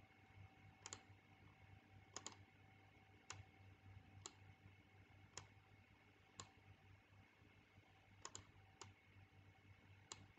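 Faint computer mouse clicks, about one a second, some in quick double pairs, over a low steady background hum.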